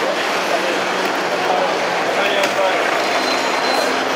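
Steady outdoor street ambience: a dense wash of background noise with indistinct voices talking under it, and a faint click about two and a half seconds in.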